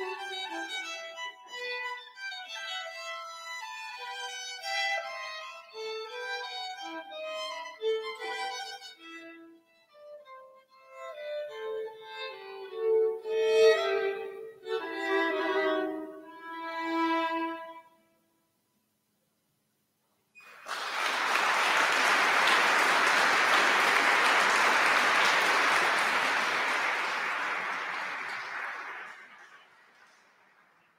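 Two violins playing a duet in counterpoint, the piece ending about eighteen seconds in. After a two-second silence, audience applause starts, the loudest thing here, and fades out near the end.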